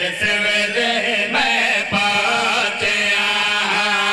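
A group of men's voices chanting a devotional verse into microphones and amplified through a PA, holding long notes that waver and bend in pitch.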